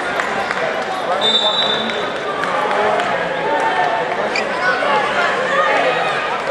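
Crowd chatter from many overlapping voices in an indoor wrestling arena, with scattered thuds and a brief high steady tone about a second in.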